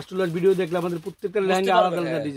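A man talking, with some long drawn-out vowels.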